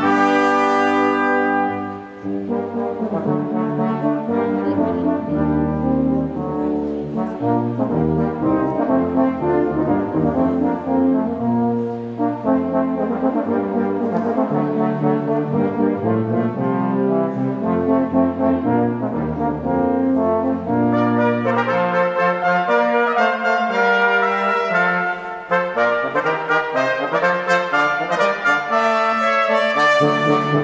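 Brass ensemble playing slow, sustained chordal music, with short breaks between phrases about two seconds in and again late on.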